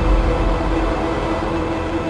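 Dark, eerie intro music: a low rumbling drone with several held tones, slowly fading after a heavy hit.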